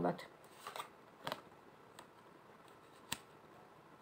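A deck of tarot cards being shuffled by hand: a few soft card rustles in the first second and a half, then a sharp click a little after three seconds.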